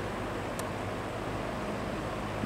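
General Electric W-26 window box fan's shaded-pole motor running steadily on medium in forward: an even rush of air over a low motor hum. In forward it turns considerably slower than on reverse medium, a long-standing quirk of this fan that the owner cannot explain.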